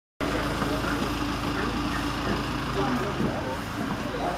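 Fire engine's engine running steadily, a low hum.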